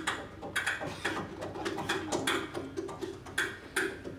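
Grand piano played inside the case by hand: irregular sharp clicks and taps over short, muted notes repeated on one pitch.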